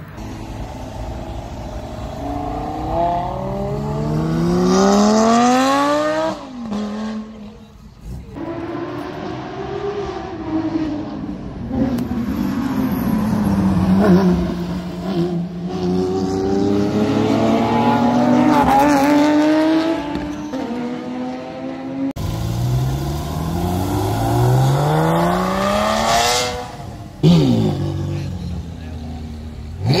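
Supercar engines accelerating hard past the crowd. The engine notes climb in pitch again and again as the cars pull up through the gears, with a long swelling note in the middle.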